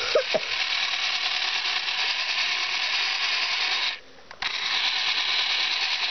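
Small electric stand mixer with a plastic beater running steadily as it beats mashed cupcake and milk in a plastic bowl. It cuts out about four seconds in and starts again half a second later.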